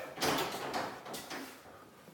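Interior door being pushed open, with a few light knocks and a rustle that fade away.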